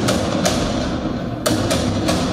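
Drum solo music for belly dance: a few sharp hand-drum strikes, about half a second and a second and a half in, over a sustained sound underneath.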